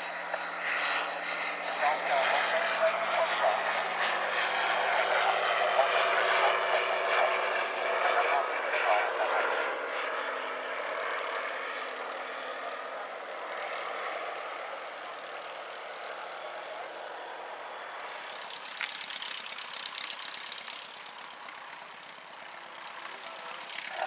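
Piston engine and propeller of a low-wing light aircraft at full power on take-off and climb-out. The sound is loudest in the first ten seconds or so and then gradually fades as the aircraft climbs away. A faint crackly hiss comes in near the end.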